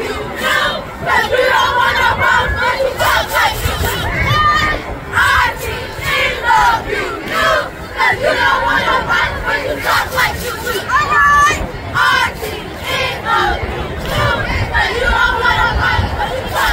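Middle school cheerleading squad chanting a sideline cheer together, their shouted voices coming in a steady rhythm.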